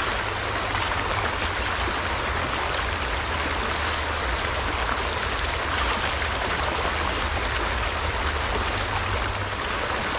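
Shallow creek running over cobbles and riffles: a steady rush of flowing water with a low rumble beneath it.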